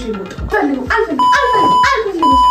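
A censor bleep: a steady, single-pitched beep lasting most of a second, starting a little past halfway, laid over voices.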